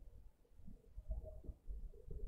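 Faint low cooing of a bird, a short pitched call about a second in, over a low rumble.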